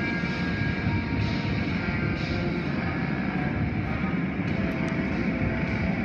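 Automatic car wash equipment running with a steady, even roar, heard from inside the car.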